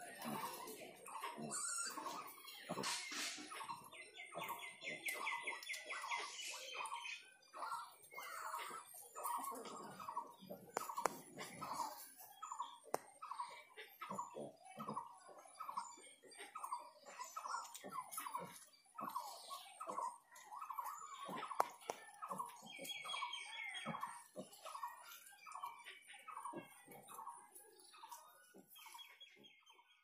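Bird calls: one bird repeats a short note about twice a second all the way through. A few times a higher, quick trill from another bird joins in.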